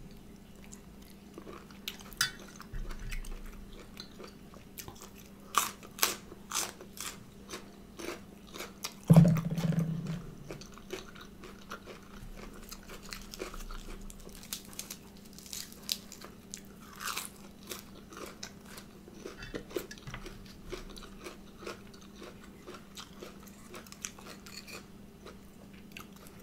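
Close-miked chewing and crunching of steamed apple snail meat and raw leafy greens: many short, separate crisp crunches and mouth sounds, with a brief low hum of the voice about nine seconds in.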